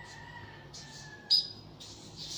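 Marker pen squeaking and scratching on a white board in short strokes as digits are written, with one sharp, louder squeak a little past halfway.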